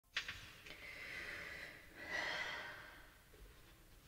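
Faint breathing close to the microphone: a small click near the start, then two slow, airy breaths, the second fading out about three seconds in.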